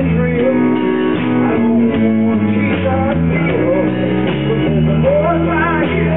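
Live rock band playing a song, led by acoustic guitars, with a bass line moving in held low notes.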